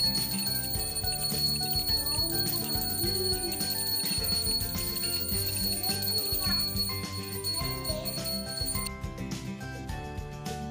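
Puja hand bell rung continuously, a steady high ringing that stops about nine seconds in, with music underneath.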